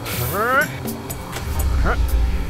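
Wordless cartoon vocal sounds sliding up and down in pitch over background music. About one and a half seconds in, a low machine rumble starts up as the rotary mains switch on the conveyor machine is turned on.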